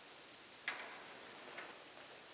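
Two short sharp knocks over a faint steady hiss: a louder one just under a second in with a brief ringing tail, and a softer one near the end.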